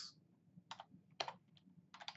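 A few separate, faint keystrokes on a computer keyboard, spaced about half a second apart.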